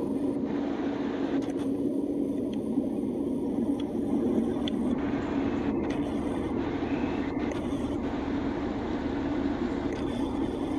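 Steady low drone of a car running, heard from inside the car, with no distinct events.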